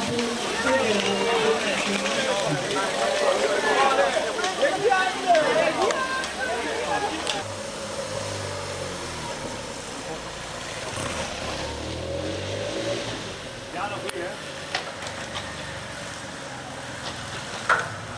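Indistinct voices of spectators for the first several seconds. Then a motorcycle engine is heard approaching and passing, its pitch rising and then falling around the middle of the stretch, on a wet road.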